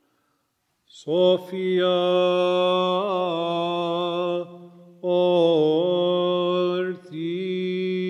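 Orthodox liturgical chant sung in long held notes with only small turns of pitch, over a steady low note. It comes in about a second in, in three phrases with short breaks between them.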